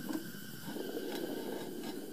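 Homemade natural-gas ribbon burner burning with a steady rushing flame noise, which grows slightly louder about two-thirds of a second in as its air intake is adjusted.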